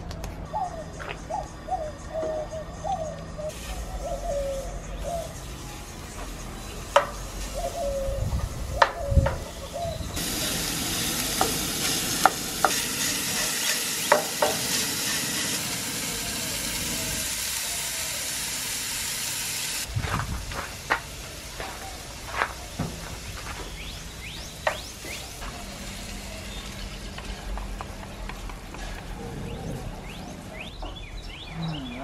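Pork sausage sizzling in a frying pan on a propane camp stove, with sharp clicks and knocks from the utensil and pan. The sizzle cuts off abruptly about two-thirds of the way through, leaving quieter scattered clicks.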